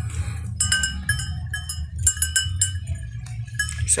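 A metal livestock bell clanking irregularly, several ringing strikes a second, as the animal wearing it moves.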